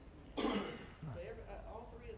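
A person coughs once, a short throat-clearing cough about half a second in, followed by faint speech.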